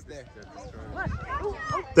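Several distant voices shouting and calling over one another, growing louder about a second in.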